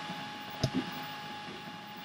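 Prusa i3 MK2 3D printer running mid-print: a steady thin whine from its stepper motors over the hiss of its cooling fans. A single click comes about two-thirds of a second in.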